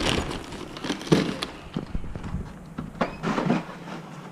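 Irregular handling and movement noise: scattered clicks and knocks with a few short thumps, about one and three seconds in, and light rustling between them.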